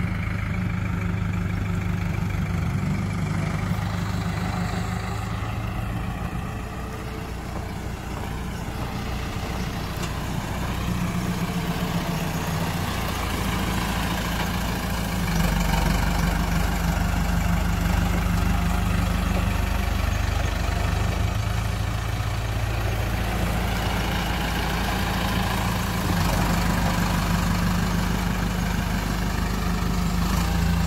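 Ford farm tractor's diesel engine running at low, steady revs, getting louder from about halfway.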